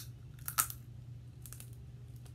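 Snow crab leg shell crackling and crunching as it is bitten close to the microphone: three short crunches, the loudest about half a second in, over a steady low hum.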